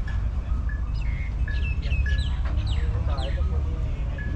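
Birds chirping: a run of short, high calls falling in pitch, several in quick succession, with a few brief steady whistled notes, over a steady low rumble.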